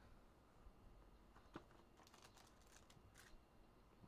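Near silence, with a few faint clicks and crinkles from a hobby box and a foil card pack being handled.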